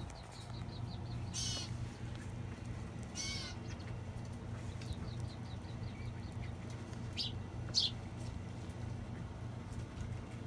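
A bird chirping briefly a few times, with short high wavering calls, loudest nearly eight seconds in, over a steady low hum.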